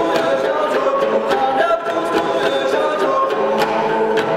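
Tibetan dranyen lutes strummed under sung melody, with a steady beat of sharp strikes about four times a second.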